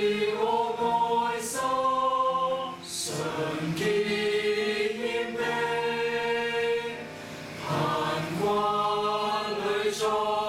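Choir singing a slow worship hymn in Cantonese, in long held chords that move every second or so, with a brief softer breath between phrases about seven seconds in.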